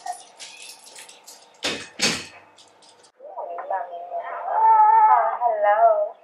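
Two sharp thumps about two seconds in, then a baby's wavering, high-pitched cry or fussing call that swells and holds through the last few seconds.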